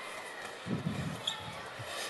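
Large inflatable beach balls being handled and set down on a wooden stage floor, with a few soft hollow thumps a little under a second in.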